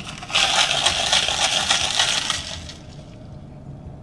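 Ice cubes rattling in a plastic cup of iced latte, a dense crackly clatter that lasts about two seconds and then dies away.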